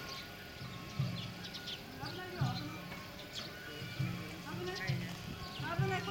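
Sawara-bayashi festival music, with repeated taiko drum beats, mixed with the voices of people nearby.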